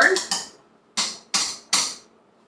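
Potato masher striking down into a pot of bean and potato soup: three sharp knocks in quick succession, mashing the potatoes and beans to thicken the broth.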